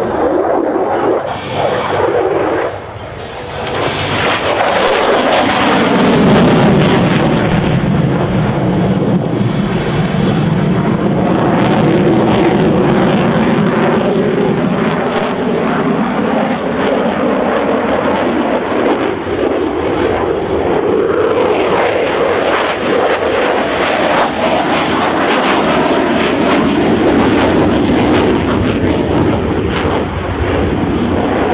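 Single-engine jet of a USAF F-16 Fighting Falcon flying display manoeuvres, a loud continuous jet noise with wavering tones. The pitch slides down about five seconds in, then the noise holds steady.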